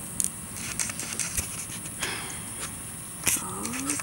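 Steady outdoor background hiss with a few soft, short clicks scattered through it.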